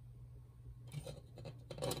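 Faint handling noise of small plastic action-figure parts: a fist being pulled off and an optional hand piece pressed on, with soft rubbing and a couple of light clicks about a second in and near the end.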